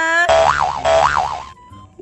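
A cartoon "boing" sound effect added in editing, its pitch swooping up and down twice over about a second.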